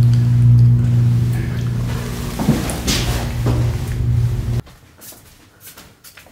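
A steady low mechanical hum with a few soft knocks in a small bathroom. It cuts off abruptly a little before the end, leaving quiet room sound.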